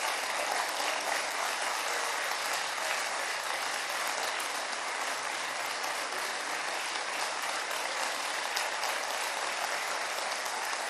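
Sustained applause from a large crowd of parliament members, a dense, even clapping that starts as the speech ends and holds steady.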